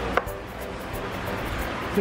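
Outdoor restaurant ambience: a steady low rumble with faint background music, and one sharp click just after the start.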